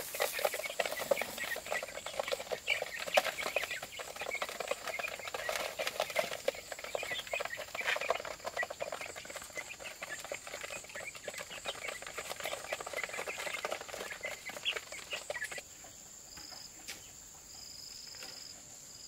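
Young chickens feeding from a plastic tray: quick pecking taps mixed with soft peeps and clucks. Near the end this gives way to steady high insect trilling with short repeated chirps.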